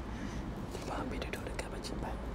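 A man speaking quietly, in a hushed voice, away from the microphone, over a steady low hum.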